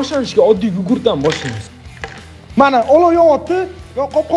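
A man's voice talking and exclaiming, over background music.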